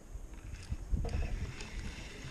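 Wind buffeting the microphone and water sloshing against the hull of a small fishing boat: an uneven low rumble, heaviest about a second in, with a light hiss over it.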